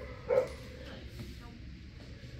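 A dog gives one short bark about a third of a second in.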